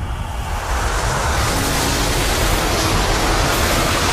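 Animated-film sound effect of magic smoke pouring out of a rubbed lamp: a loud, steady rushing whoosh that grows brighter and hissier about half a second in.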